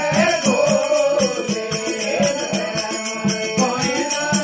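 Rajasthani devotional bhajan sung live by a man's voice with harmonium, over the drone of a strummed tandura (long-necked lute) plucked about four times a second, with a rhythmic metallic jingle.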